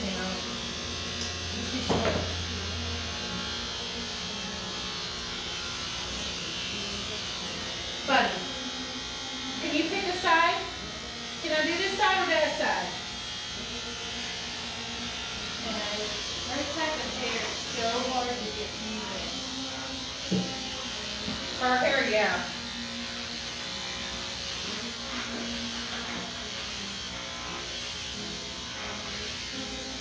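Electric pet-grooming clippers buzzing steadily while clipping a dog's coat, with voices talking over them now and then.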